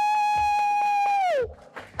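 A person's long, high 'woo!' cheer, held on one note and falling away about one and a half seconds in, with about five quick hand claps under it.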